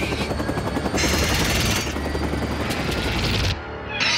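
Action-film sound mix of a helicopter's rotor and engine rumbling steadily, with music underneath. The sound drops away suddenly about three and a half seconds in.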